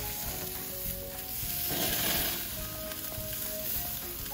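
Beef steaks sizzling on a hot grill grate as they are turned over with tongs. The sizzle swells for a moment about two seconds in.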